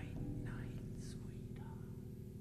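Live progressive rock band holding low, steady sustained notes while a voice whispers a few short syllables over them.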